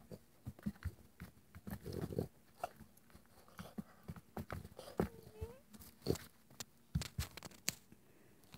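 A Boston terrier scrabbling under a bed after a ball: scattered soft taps and scuffs of paws and ball on a rag rug, irregular and brief, with a short denser scuffle about two seconds in.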